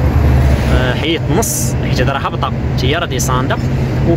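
Heavy truck's cab drone: the engine and tyres run steadily at motorway speed, with a voice heard now and then over it.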